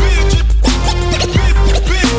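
Instrumental break of a hip hop track: a drum-machine beat with heavy bass under quick turntable scratches that sweep up and down in pitch.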